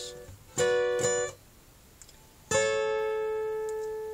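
Acoustic guitar playing the same three-note chord high on the neck twice: 11th fret G string, 12th fret B string and 10th fret high E string, a B minor triad. The first strum, about half a second in, is damped after under a second. The second, about two seconds later, is left ringing and slowly fading.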